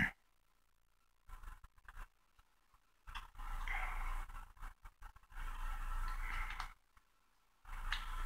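Faint rustling and rubbing of a paper dollar bill as fingers fold and crease it, with a few small crinkling clicks and then three short spells of rubbing separated by dead silence.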